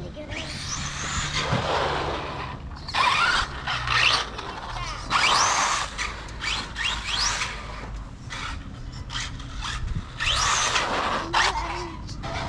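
Electric RC car motor whining up in several short throttle bursts, each a steep rising whine over tyre noise, with a steady low rumble underneath.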